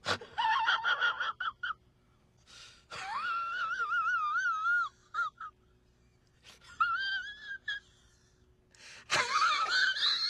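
A man's high-pitched, wheezing laugh in several separate fits with silent gaps between them, with squeaky, wavering notes in the middle fits.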